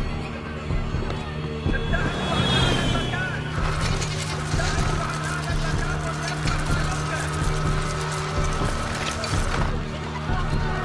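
Film soundtrack: a sustained low music drone with voices over it, thickening into a denser noisy mix about four seconds in.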